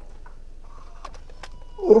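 A pause in a man's amplified speech: low room tone with a few faint short clicks in the middle, then his voice resumes just before the end.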